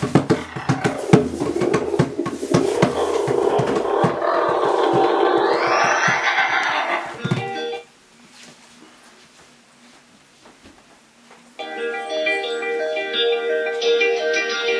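Sound effect of the magic cave door opening: a loud noisy rumble full of knocks, with a rising whoosh, that cuts off suddenly about halfway. After a few quieter seconds, plucked-string music starts near the end.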